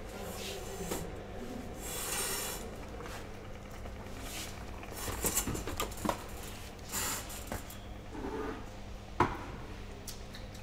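Handling noises of a person at a table: rustling, light clicks and knocks over a steady low hum, with a brief hiss about two seconds in and a sharp knock near the end.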